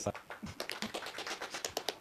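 A quiet run of soft, quick clicks and taps, such as handling noise or small knocks in a hall.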